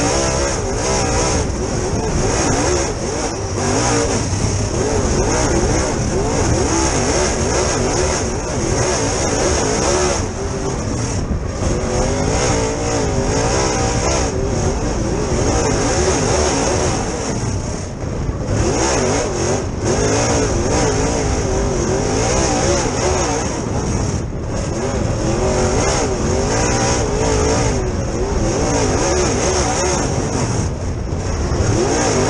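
Dirt super late model's V8 race engine heard from inside the cockpit, revving up and down in pitch as the throttle is worked through the turns, with several brief lifts off the throttle.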